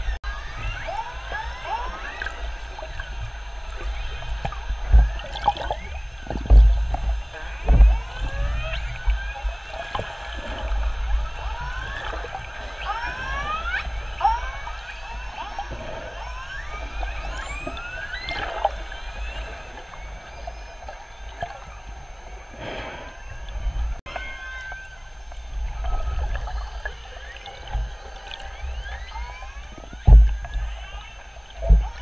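Killer whale calls heard underwater from several pods together: many short whistles and calls sweeping up and down in pitch, overlapping one another, with a few low thuds.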